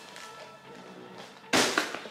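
Background music with sustained tones; about one and a half seconds in, loud rustling and crinkling of plastic packaging breaks in suddenly.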